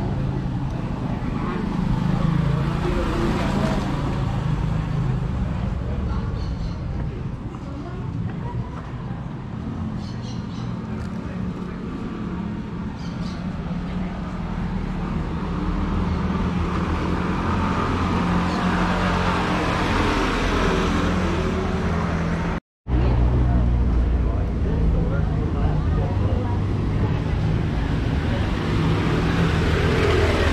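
Street traffic: motorcycle engines running and passing on a cobblestone street, with people's voices in the background. The sound cuts out for a moment about two-thirds of the way through.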